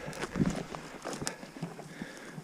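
Footsteps wading through rough heather and long grass between young spruce trees, with stems and twigs brushing and clicking against the walker.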